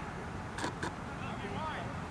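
Faint, distant shouting from players on a soccer pitch, with two short sharp knocks about a quarter second apart a little over half a second in.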